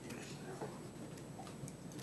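Quiet room tone in a large meeting room, with a few faint scattered ticks.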